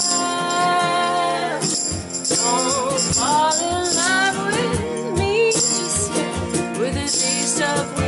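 Live acoustic-style band music: female voices singing a melody over a Nord Electro 5 keyboard, with an egg shaker rattling in bursts.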